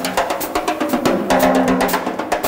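Hard bop jazz drum kit playing a short break of rapid snare, bass drum and cymbal strokes while the tenor saxophone rests. Sustained pitched notes, probably piano and bass, sound underneath from about halfway in.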